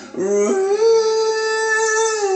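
A man singing one long held note, sliding up into it in the first half-second and then sustaining it steadily.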